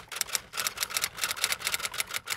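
Typewriter sound effect: a fast, slightly uneven run of key clacks, about ten a second.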